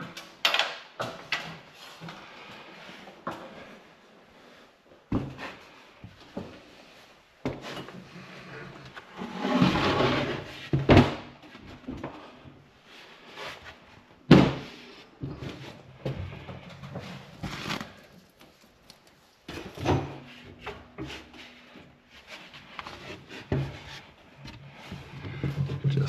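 Irregular knocks, bumps and scraping of a heavy sheet of ¾-inch plywood being handled on a scaffold and slid into place against the upper wall framing. A longer scraping stretch comes about ten seconds in, and a sharp knock near the middle.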